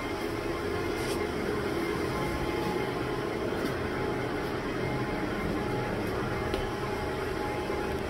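Steady hum and whir of the cooling fans and air conditioning serving the radio and power equipment in a cell site equipment shelter, with a few faint clicks.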